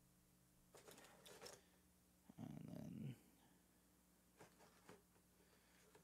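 Quiet desk handling sounds as fishing-tackle packaging is moved about: light rustles, a short low rubbing rumble a little over two seconds in, and a few soft clicks near the end.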